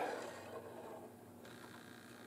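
Faint metallic sliding of the SVT-40's steel operating-rod spring and rod being drawn out of the gas-piston assembly.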